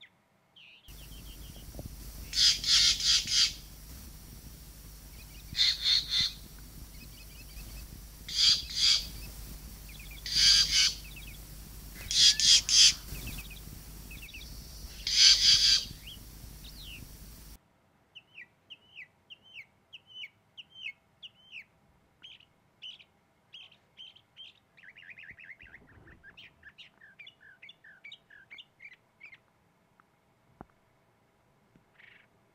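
Green jay giving six loud, harsh, rapidly pulsed calls spaced about two seconds apart. After about 17 seconds come quieter short chirps and trills of other birds.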